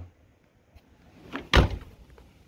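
A short knock, then a single loud dull thump about a second and a half in.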